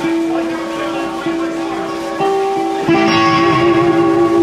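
Electric guitar playing a slow blues in long held notes, stepping to a new note a few times. It grows louder about three seconds in.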